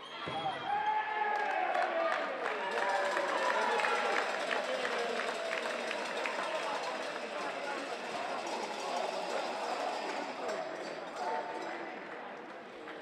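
Overlapping shouting voices in a sports hall, with a scattering of sharp knocks from a handball bouncing on the court.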